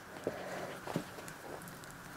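Pet rabbit eating a piece of banana from a hand: a few faint, short clicks of chomping.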